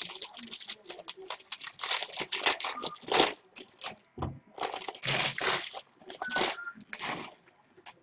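Foil baseball-card pack wrappers being torn open and crinkled by hand: a dense, irregular run of rustles and crackles.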